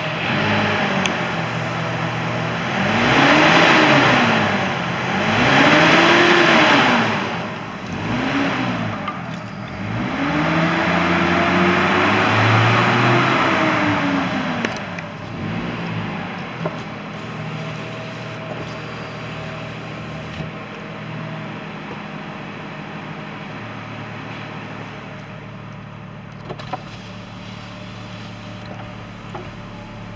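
2005 Chevrolet Trailblazer's 4.2-litre inline-six engine revved up and let fall four times, the fourth rev held longest, then settling back to a steady idle.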